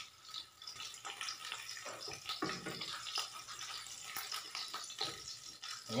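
An egg frying in hot oil in a frying pan, with a light steady crackling sizzle. The metal spatula scrapes against the pan a few times.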